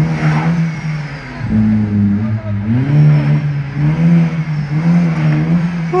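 Small hatchback's engine being revved repeatedly at low speed, its note rising and falling in several swells.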